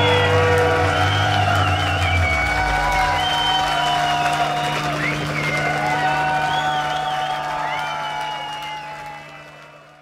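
Concert audience applauding, cheering and whooping at the end of a song, over a low steady held tone. The whole sound fades out over the last two seconds.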